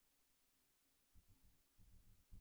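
Near silence: faint room tone, with a few soft, low thuds in the second half.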